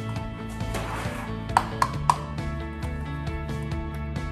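Background music with held notes, and three sharp taps in quick succession a little under two seconds in: an egg being knocked against a bowl to crack it.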